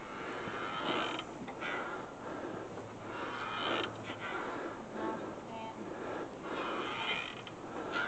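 Hydraulic floor jack being pumped to lift the rear of a car, giving faint creaking strokes a second or two apart as the car rises.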